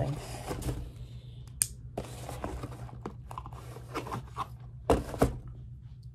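A cardboard mailer box being opened by hand: tearing and crinkling of the packaging, with a few sharp knocks, the loudest pair near the end.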